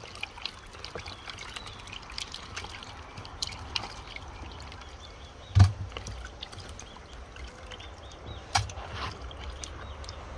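Water splashing and trickling as pieces of raw fish are washed by hand in water and vinegar. There is a sharp knock about halfway through and a lighter one near the end.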